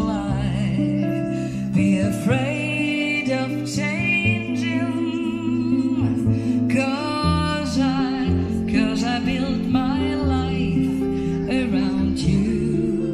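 Live jazz: a woman sings a melody into a microphone, accompanied by an archtop jazz guitar, with sustained low bass notes underneath.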